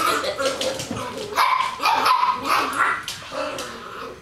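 Small dogs barking and yipping as they play together.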